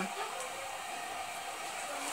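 Steady faint hiss with a faint hum: room background noise between speech.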